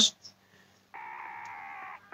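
A short pause, then a steady held tone from the anime episode's soundtrack starting about a second in and lasting about a second before cutting off abruptly.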